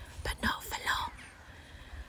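A woman whispering a few words under her breath in the first second, with no voiced pitch, over a low wind rumble on the microphone.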